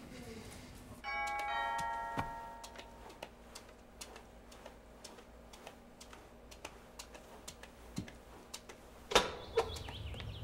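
Doorbell chime ringing about a second in, several steady notes sounding one after another and fading over about a second and a half. Then come light, evenly spaced clicks of footsteps on a hard floor, and a loud clack of the front door being unlatched and opened near the end.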